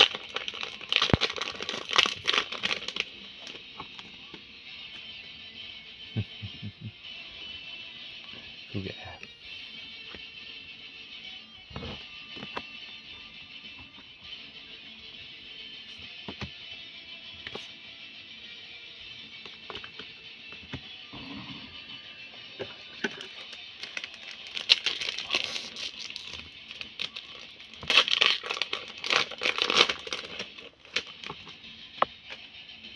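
Foil wrapper of a Japanese Pokémon card booster pack crinkling loudly as it is torn open in the first few seconds, and again from about 24 seconds in as the next pack is handled. A few light clicks of card handling come in between, over background music.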